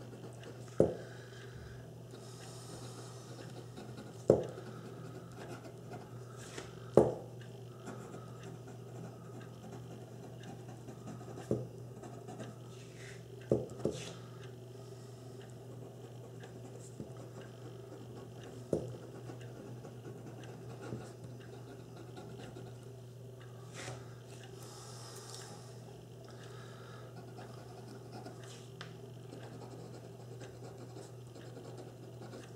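Fine-nibbed Hero 9622 fountain pen scratching faintly across paper as words are written by hand. A few sharp knocks stand out along the way, the loudest sounds heard.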